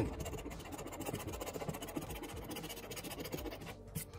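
A coin-like scratcher token scraping the latex coating off a paper scratch-off lottery ticket, in quick repeated strokes.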